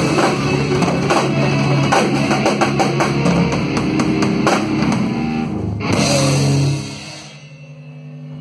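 Rock band playing live: electric bass and drum kit with cymbals. The song ends about seven seconds in, with the last chord left to ring and fade.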